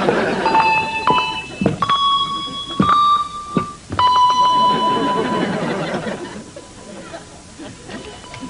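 A set of handbells rung one at a time to pick out a slow melody. Each note is struck and left to ring, with uneven gaps between notes, and a longer held note about four seconds in.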